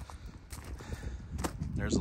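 Footsteps on gravel, a few separate steps over a low rumble.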